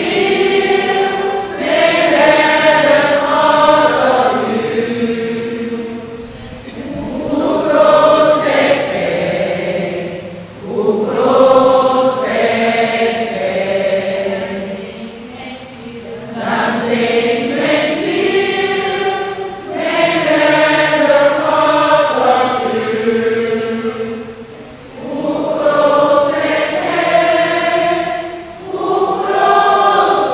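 Congregation singing a hymn together, many voices in phrases of a few seconds with brief dips between the lines.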